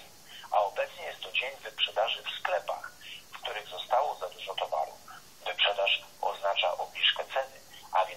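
Speech only: a voice talking steadily in short phrases, thin and tinny with no bass or treble, like speech heard over a telephone line.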